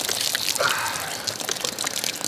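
A jet of water gushing and splashing steadily onto a person's face and hair.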